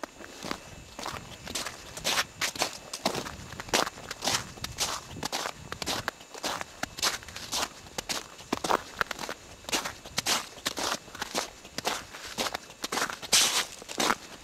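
Footsteps of a group of people walking on snow-covered ground: an irregular run of steps, several each second, louder near the end.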